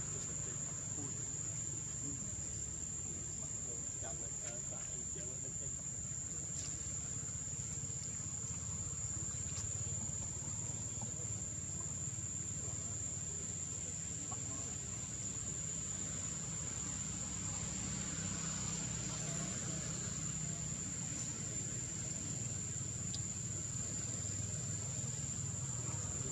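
Steady high-pitched insect drone, one unbroken tone, over a continuous low rumble, with a few faint clicks.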